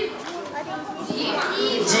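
Children's voices calling out from an audience in a hall, with a girl answering a question off the microphone.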